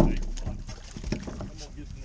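Low wind rumble with faint scattered clicks and water sounds beside a small boat as a hooked crappie is lifted out of the water; a shouted word is cut off at the very start.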